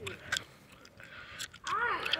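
A child's short call near the end, over a low rumble and a few light crackles.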